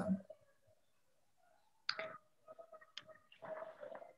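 A few faint, sharp clicks, the first about two seconds in and another about a second later, with faint indistinct sounds after them.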